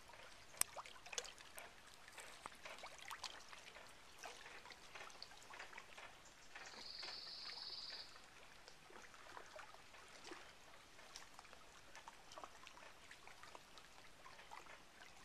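Faint lapping and trickling of small wavelets at the lake's edge, with scattered small ticks throughout. A little before the middle, a high, thin hiss lasts about a second and a half.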